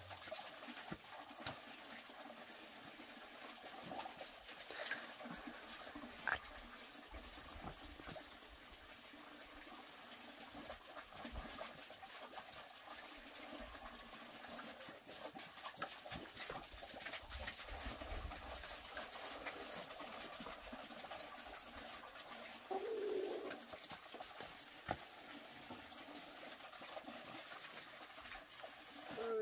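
Quiet countryside background with a dove cooing and a few light knocks; the clearest call comes briefly about three quarters of the way through.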